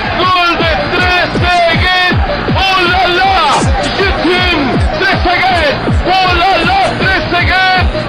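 Electronic dance music with a steady, evenly repeating kick drum beat and a sung vocal melody over it.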